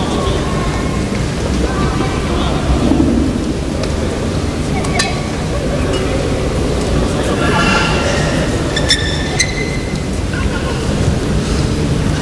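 Badminton hall ambience: a steady low rumble with a murmur of voices, and a few sharp clicks of the shuttlecock being struck by a racket.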